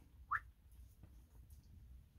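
A brief, rising whistle-like chirp about a third of a second in, followed by a few faint clicks of a paper card deck being handled.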